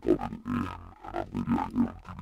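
Recorded spoken dialogue pitched down and distorted into a neurofunk-style bass, its EQ bands swept by an LFO whose rate follows the voice's own envelope. The speech's syllable rhythm still comes through as choppy bursts over a constant low bass.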